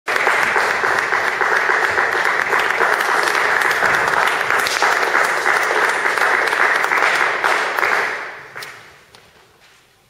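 Audience applauding steadily, then dying away about eight seconds in.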